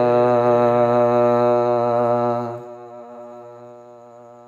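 Steady wordless vocal humming holding one note under a naat. It fades down sharply about two and a half seconds in, leaving a quieter held drone.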